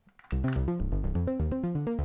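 A looped synth bass clip in Ableton Live, launched from a MIDI foot controller, playing a riff of short low notes that starts about a third of a second in and cuts off at the end.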